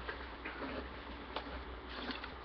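Faint, unevenly spaced small clicks over a low steady hum.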